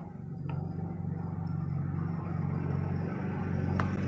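Steady low engine-like hum coming through a meeting participant's unmuted microphone, with a few mouse clicks near the start and near the end as the mute-all control is worked.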